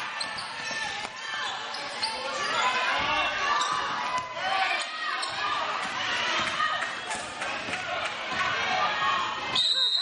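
Basketball bouncing on a hardwood gym floor, with spectators' voices echoing in the hall. A referee's whistle sounds shrilly near the end.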